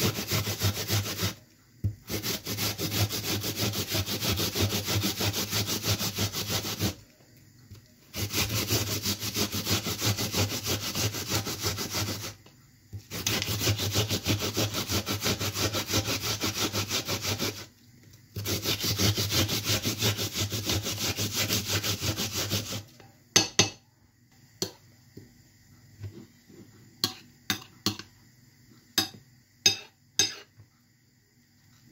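A red onion being grated by hand on a flat grater: fast, even rasping strokes in four long runs with short pauses between. In the last several seconds the rasping stops, giving way to scattered sharp clicks of a fork against a ceramic plate.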